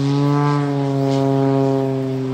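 Single-engine propeller airplane flying overhead, a steady engine-and-propeller drone whose pitch slowly falls as it passes.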